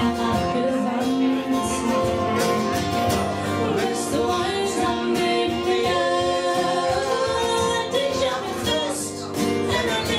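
Live acoustic band music: two strummed acoustic guitars with singing over them.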